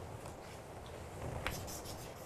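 Chalk scratching on a chalkboard as a word is written: faint short strokes, starting about halfway through.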